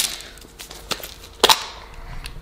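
A few sharp clicks and snaps as a gift's packaging is handled and pulled open, the loudest about one and a half seconds in.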